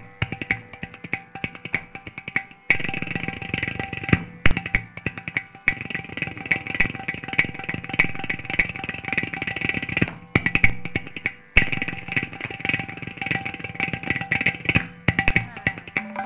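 Mridangam and ghatam playing a fast, dense passage of Carnatic percussion strokes over a steady drone, with a few short breaks in the stroke pattern.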